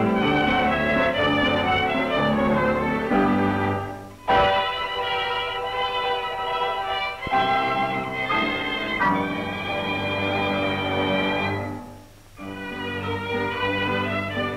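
Orchestral background music led by bowed strings, sustained chords that fall away briefly twice, about four seconds in and again near the end, each time coming back with a new phrase.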